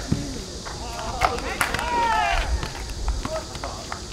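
Footballers shouting and calling to one another across the pitch in short, scattered calls, with a sharp knock of the ball being kicked right at the start.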